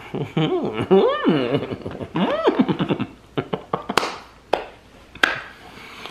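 A man with a mouthful of soft brownie cookie making muffled 'mmm' sounds whose pitch swoops up and down over the first few seconds. After that comes chewing, with scattered mouth clicks and a couple of sharper ticks.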